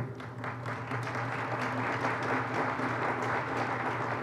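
Audience applauding, rising about half a second in and then holding steady.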